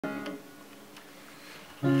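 A short spell of quiet room tone, then an acoustic guitar comes in suddenly near the end with its first ringing notes.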